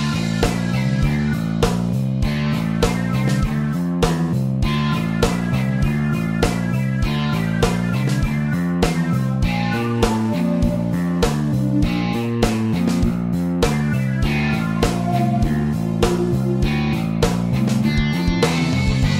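Slow heavy metal backing track: electric guitar riffing over drums with a steady beat.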